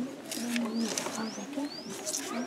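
Birds calling: a low, steady cooing like a dove's, with three short rising chirps from a small bird.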